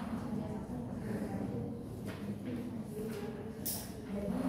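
Indistinct low chatter of students' voices in a classroom, with a short hiss near the end.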